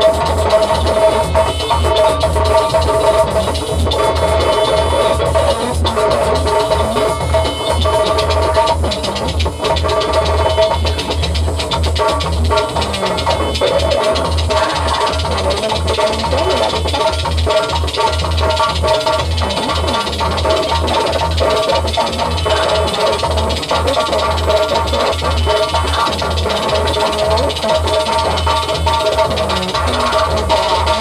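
Electronic music played live from a laptop and hardware controller: a steady pulsing low bass beat under sustained synth tones, unbroken throughout.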